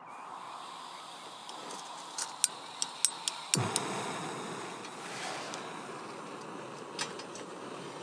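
Small gas canister camping stove being lit: gas hissing from the opened valve, a few sharp clicks, then the burner catches about three and a half seconds in and burns with a steady rush. A single light knock comes near the end as a pot is set on the stove.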